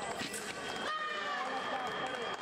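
A sabre fencer shouts after a touch, her voice rising and falling in pitch about a second in. Over it the electric scoring machine gives a steady, high beep as the touch registers.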